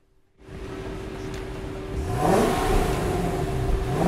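Infiniti FX50S's 5.0-litre V8 on its stock exhaust, with no sound system switched on, idling and then revved: the pitch rises and falls about two seconds in, and a second rev starts near the end.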